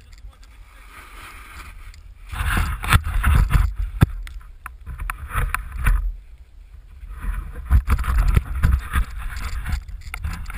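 A snowboard sliding through deep powder snow: rough swishing in two long spells, from about two seconds in and again from about seven seconds, with knocks and wind rumble on the microphone.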